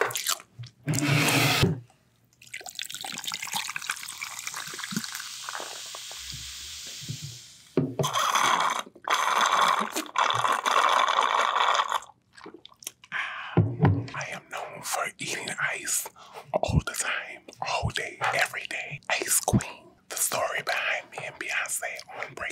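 Cola fizzing steadily in a glass over ice for several seconds, then a long noisy sip through a straw, followed by a run of short sharp clicks and mouth sounds close to the microphone.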